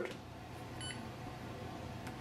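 A short, faint key-press beep from the Canon MAXIFY GX6021 printer's touchscreen, once a little under a second in, over a low steady hum.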